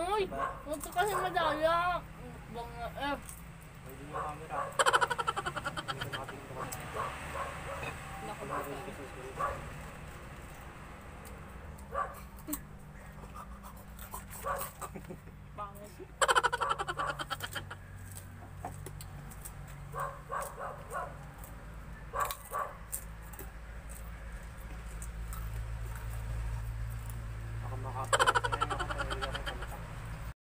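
Short bursts of a person's voice, with pauses between them, a few brief clicks or crunches in between, and a steady low hum underneath.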